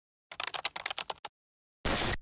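Rapid typing on a computer keyboard, about a dozen quick keystrokes over roughly a second. A short, loud rush of noise starts just before the end.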